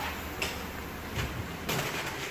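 Steady workshop room noise with a few soft clicks and knocks.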